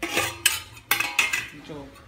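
Stainless-steel kitchenware clattering: a steel plate lid is lifted off a steel pot and a steel ladle clinks against the pot, giving several sharp metallic clinks in the first second and a half.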